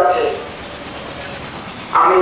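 A man's voice through a microphone ends a long note held at one steady pitch, then about a second and a half of steady background hiss, until another held note starts at the very end.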